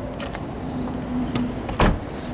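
A single sharp thump near the end, over a steady background hiss.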